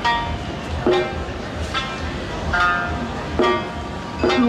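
Japanese traditional dance music: a plucked string instrument striking single notes with a quick decay, a little more than once a second, over a steady hall background.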